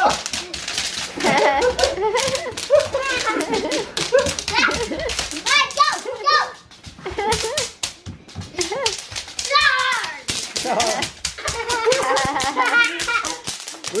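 Bubble wrap popping in quick, dense pops as children run and stomp along a strip of it on the floor, with children's squeals and laughter over it.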